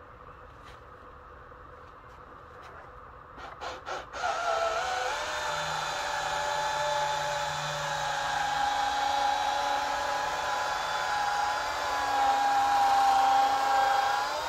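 Milwaukee 3-inch rotary polisher running with a white pad and polish on a yellowed plastic headlight lens, a steady motor whine that starts about four seconds in, just after a few short clicks. Its pitch shifts slightly as it works, once more about twelve seconds in.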